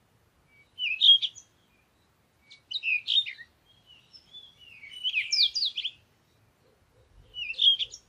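A bird chirping and twittering in four short phrases a couple of seconds apart, each a quick run of high gliding notes.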